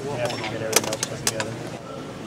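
Slotted metal angle and its fasteners clinking as they are handled during assembly: a handful of sharp metallic clicks clustered in the middle, over background voices.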